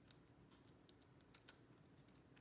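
Near silence with faint, scattered light ticks and clicks of fingers handling a small paper banner and its adhesive dots.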